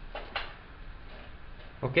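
Faint steady room noise with one short soft click about a third of a second in, then a man saying "Ok" at the very end.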